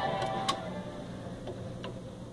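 The end of a record on a 1961 Admiral console changer: the music fades out in the first half second. Then there is a low hum from the turntable and amplifier, with a few faint clicks as the stylus rides near the label at the end of the record.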